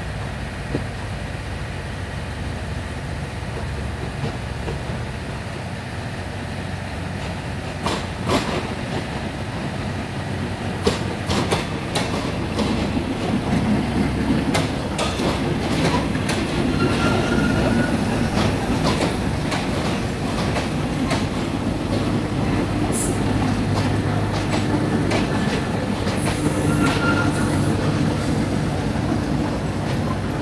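A State Railway of Thailand diesel railcar train pulls slowly into the platform. Its engine rumbles low and grows louder as it comes alongside, the wheels click over the rail joints, and short metallic squeals come twice, about halfway through and near the end.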